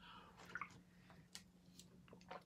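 Near silence with a few faint, small wet clicks: a man swallowing a shake from a plastic shaker bottle.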